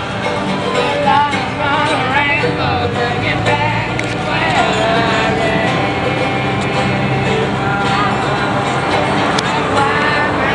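Street musicians playing live acoustic music: a gliding melody line over steady guitar chords.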